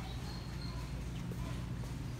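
Steady low hum of a large store's interior with a few faint clicks and knocks, like footsteps on a hard floor.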